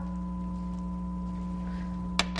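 Steady electrical hum: one strong low tone with several fainter, higher steady tones above it, level and unchanging.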